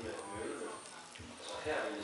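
Faint background chatter of other people's voices in a small room.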